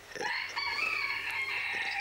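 A rooster crowing: one drawn-out call lasting nearly two seconds.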